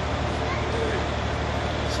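Steady low hum under even background noise, with no clear event.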